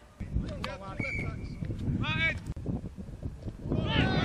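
Men's voices shouting and calling across an open football pitch, with wind rumbling on the microphone. The loudest calls are high and rise and fall in pitch, about two seconds in and again near the end.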